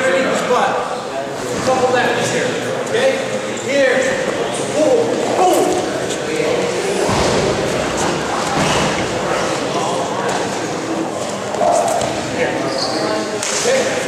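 Talking in a large, echoing room, with dull thuds and slaps of feet and bodies on a wrestling mat as two wrestlers tie up and one shoots a double-leg takedown.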